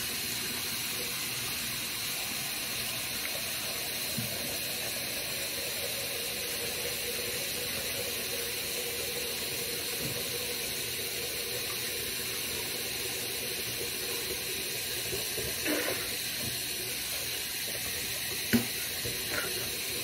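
Bathroom sink tap running steadily, an even hiss of water, with one short knock near the end.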